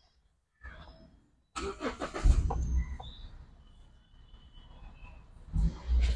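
Toyota Etios engine starting: a sudden burst about one and a half seconds in, loudest about half a second later, then fading to a faint low sound.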